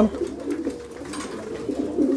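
Domestic pigeons cooing softly in a small loft, with faint clicks of pecking and scuffling at a grain feeder.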